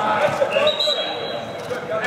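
Indistinct voices of players and coaches calling out, echoing in a large indoor hall, with scattered dull thuds from the drill.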